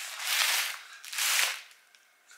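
Bubble-wrap packaging crinkling in two short bursts as it is handled.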